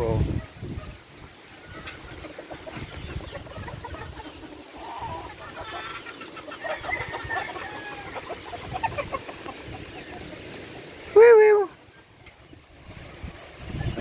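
Roosters calling in a gamefowl yard: faint clucks and distant crowing over steady background noise, then one loud, short rooster call near the end.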